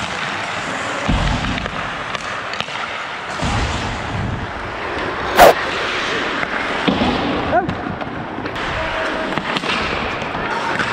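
Hockey skates scraping and carving on ice amid the clatter of sticks and puck during play. About halfway through comes one loud, sharp crack of a hard impact, the loudest sound, with a few smaller knocks and squeaks after it.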